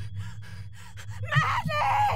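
A woman's breathy gasping cry, loudest in the second half, over a low steady drone with paired low thuds.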